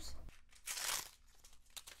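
Thin plastic packet crinkling as it is handled and torn open: a brief rustle about halfway through, then a couple of light clicks near the end.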